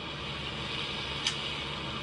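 Steady road and engine noise inside a moving vehicle's cab, with a single sharp click just past a second in.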